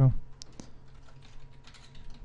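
Typing on a computer keyboard: a scatter of faint, irregular key clicks over a low steady hum.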